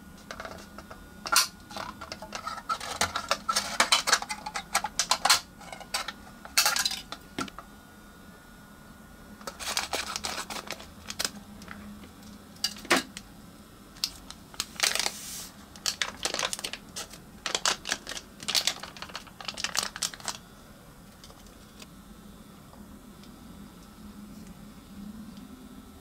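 Foil candy-powder packet from a Popin' Cookin' DIY candy kit being handled, crinkled and torn open, in several bursts of crackling with short pauses between.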